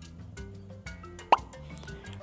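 Soft background music with a single short, loud plop about a second and a half in, as the orange wooden puzzle piece is set into its place on the board.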